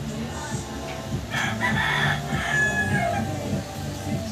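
A rooster crowing once, a call of a little under two seconds that begins just over a second in.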